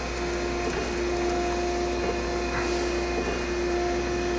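Okamoto ACC-1632DX hydraulic surface grinder running with its table traversing: a steady machine hum with a constant low drone and a steady mid-pitched tone.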